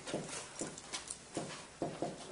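Dry-erase marker writing on a whiteboard: a run of short, irregular strokes, about six in two seconds, as letters are written.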